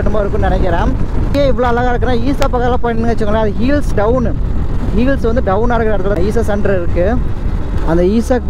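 A person's voice runs on almost without a break, its pitch rising and falling, over the steady low rumble of a motorcycle on the move.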